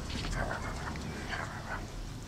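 A four-month-old Doberman puppy vocalising in two short, high-pitched bursts about a second apart.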